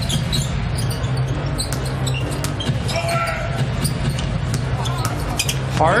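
Arena game sound of an NBA game: a basketball bouncing on a hardwood court, heard as scattered sharp knocks over the steady low noise of the crowd in a large arena.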